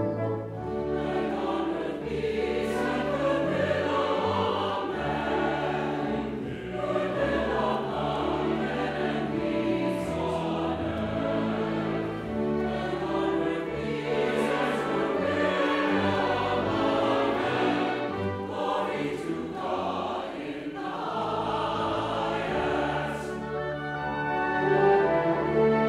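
A mixed church choir singing a choral anthem with a chamber orchestra of strings and brass, at a steady level throughout.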